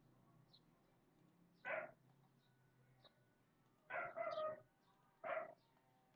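Three short animal calls in the background: one about two seconds in, a longer double call about four seconds in, and a short one near the end.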